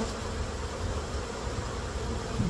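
Steady buzz of many honey bees around an opened hive box whose frames of comb are being worked.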